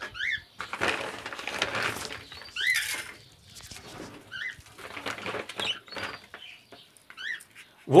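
A few short chirping calls from caged birds, scattered through, over the gritty rustle of crumbly egg food being scooped and dropped by hand into plastic feed tubs.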